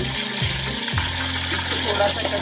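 Whole spices and fried onions sizzling in hot oil in a pot, a steady, loud frying hiss.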